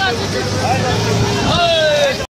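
Busy street crowd: several people's voices talking over the steady hum of vehicle engines and traffic.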